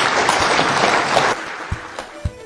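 Audience applauding, dying away about a second and a half in.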